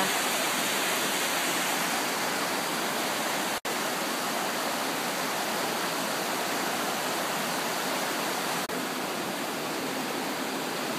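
Creek water rushing: a steady, even rush with no rhythm, broken by a split-second gap about three and a half seconds in.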